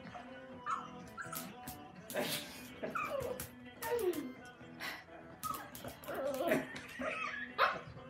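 Small dog whining and yipping in a string of short, falling, wavering cries, with scattered clicks and knocks, over steady background music.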